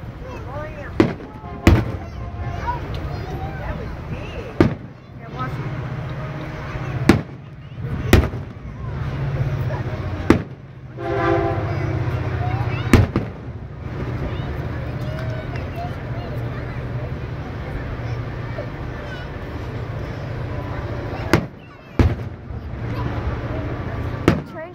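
Aerial firework shells bursting overhead: a series of about nine sharp bangs at irregular spacing, a second or a few seconds apart, with a lull of several seconds in the second half.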